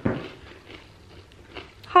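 Faint crunching of a person chewing a small rice cracker with the mouth closed.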